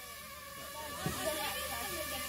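DJI FPV drone flying overhead, its propellers giving a steady high buzz like a big mosquito.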